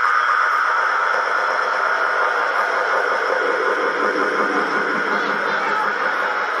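Electronic dance music breakdown: a steady hissing noise wash over faint held synth tones, with no bass and no beat.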